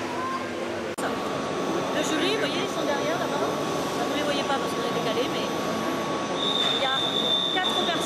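Noise of a busy machining hall: many voices over a steady high whine from the CNC milling machines, with a second, higher whine for about a second near the end.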